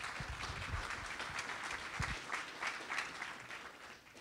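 Audience applauding, dying away near the end, with a low thump about two seconds in.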